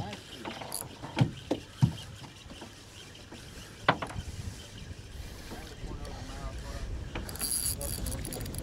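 Spinning fishing reel being cranked to bring in a hooked fish, its handle and gears winding mechanically, with a few sharp clicks and knocks in the first four seconds.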